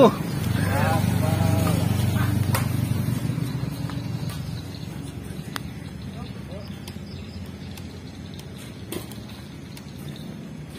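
A low, steady engine hum that fades away over the first few seconds, with a voice briefly near the start. Sharp, isolated clicks of badminton rackets striking the shuttlecock come every few seconds.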